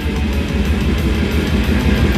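A live metal band playing loud, with distorted electric guitars, bass and pounding drums.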